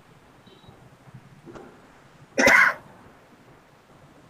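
A person coughs once, a short sharp burst a little past halfway through.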